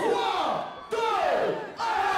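A man's voice over the PA making repeated falling whoops, about two a second. Music comes in with a held tone near the end.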